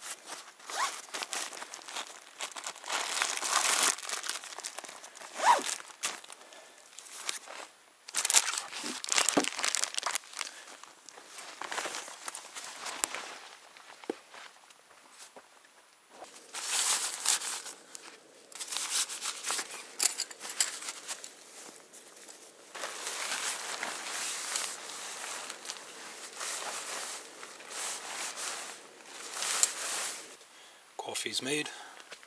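Nylon backpacking gear rustling and crinkling in irregular bursts as a backpack is unpacked and a tent is handled. The sound changes abruptly about halfway through.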